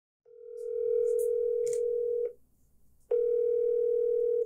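Telephone ringback tone heard on the caller's end of a phone line: a steady electronic tone that rings for about two seconds, stops briefly, then rings again about three seconds in.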